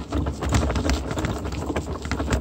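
Wheels rolling over a gravel and dirt driveway: an irregular crunching crackle over a steady low rumble of wind on the microphone.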